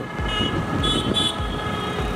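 City street traffic noise with a few short high beeps, over a low beat about twice a second.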